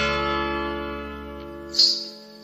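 Instrumental introduction of a Bollywood film song: a held chord with bass fades over about a second and a half, then a sharp, bright accent comes just before the end.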